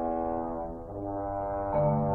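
French horn playing slow, sustained notes, changing to a new note about a second in. Near the end a marimba comes in with low, pulsing notes and the music gets louder.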